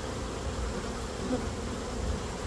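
Honeybees buzzing in a steady hum, close up over a comb frame crowded with bees.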